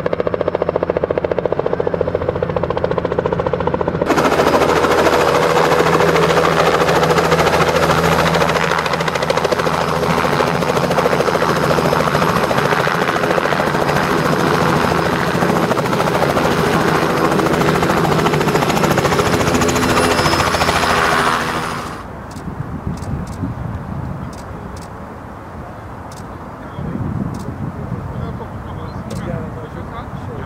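Robinson R66 turbine helicopter hovering low and landing, its rotor and turbine running loudly with a fast, even rotor pulse. About 22 seconds in the helicopter sound stops abruptly, leaving a much quieter background with a few sharp clicks.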